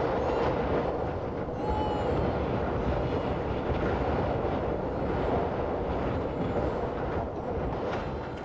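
Strong wind blowing steadily across open desert ground: a dense, even rush with a deep low rumble.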